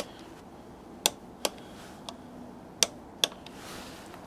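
Click-type torque wrench clicking as the air filter element screws reach the set torque of 7.5 N·m: five sharp clicks, the later ones in pairs about half a second apart.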